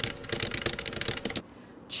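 Typing sound effect: a rapid run of keystroke clicks that stops about one and a half seconds in.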